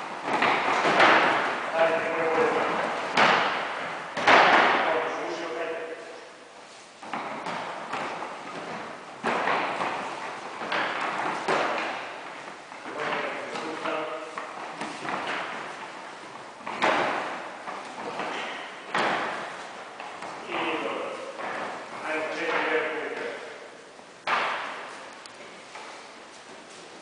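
Repeated thuds of bodies landing on foam interlocking mats as aikido throws are received in breakfalls, about eight or nine at irregular intervals. Voices sound throughout in a large, echoing gym.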